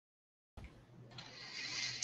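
Dead silence, then from about a second in a faint hiss of microphone room tone that grows slightly toward the end.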